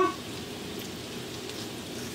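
Steady, even sizzling of melted butter and garlic in a hot stainless steel frying pan.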